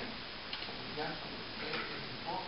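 Speech: a man talking quietly into a microphone, over a steady hiss.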